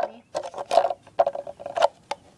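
Small plastic toy wheelie bin being handled: a quick, irregular run of plastic clicks and clacks, about eight in two seconds.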